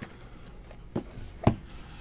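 Two light knocks about half a second apart, the second louder, as sealed cardboard trading-card boxes are handled on a table.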